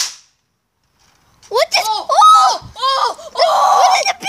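A plastic Nerf Longstrike CS-6 toy blaster smashed once against a rock: a single sharp crack at the start. From about a second and a half in, a child's voice exclaiming loudly, rising and falling in pitch.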